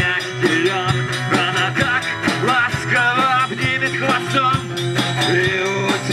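Live rock band playing: acoustic guitar, electric bass guitar and drum kit, with a steady drum beat under a melodic line.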